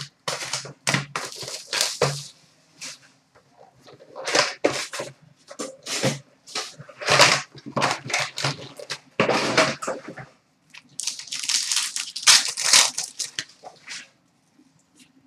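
Hockey card pack wrappers being torn open and crinkled by hand, in a series of short rustling, crackling bursts with brief pauses between them.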